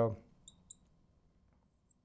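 Marker squeaking on a lightboard's glass while writing: a few short high squeaks about half a second in, and again faintly near the end.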